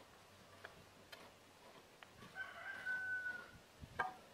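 A rooster crows once, a single long call in the second half. A few faint sharp knocks come before and after it.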